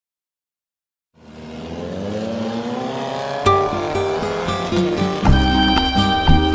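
A car engine sound effect fades in about a second in and revs up slowly, rising in pitch. At about three and a half seconds light music begins over it.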